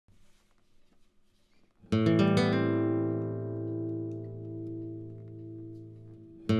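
A guitar chord strummed once about two seconds in, after near quiet, and left to ring, fading slowly.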